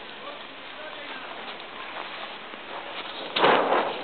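A windsurf sail rig falling over onto the training board near the end: a loud, crackling rustle of the sail's clear film and the clatter of the rig.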